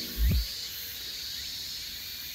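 Steady high-pitched chirring of insects, with a brief low thump about a third of a second in.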